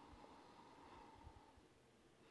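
Near silence: quiet room tone with a faint hum and a few soft low bumps about a second in.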